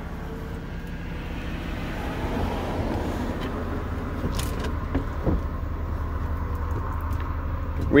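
BMW 435d convertible's power-operated folding hard top opening: a whir of the roof mechanism that builds from about two seconds in, with a couple of short clicks midway. Underneath, the twin-turbo straight-six diesel is idling.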